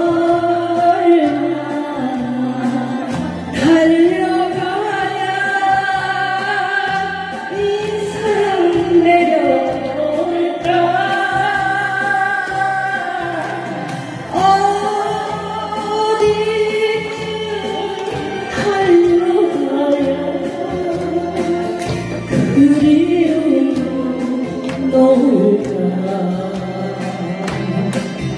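A woman singing a Korean trot song into a microphone over a backing track, in long held phrases with vibrato.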